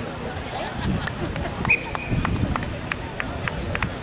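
Distant voices of players and spectators at an outdoor match over a low rumble, with scattered sharp knocks and a short high tone just under two seconds in.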